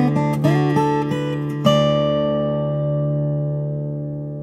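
Steel-string acoustic guitar with African blackwood back and sides and a Moonspruce top (2020 Casimi C2S), played: a few picked notes with slides, then a final chord struck about one and a half seconds in that rings out and slowly fades.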